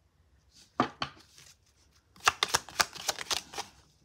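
Tarot cards being handled: a single sharp click about a second in, then a quick run of card snaps and flicks as a card is drawn off the deck and laid down on the spread.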